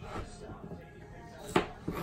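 Kitchen knife chopping through a peeled plantain onto a plastic cutting board: one sharp chop about three-quarters of the way in, followed by a lighter knock.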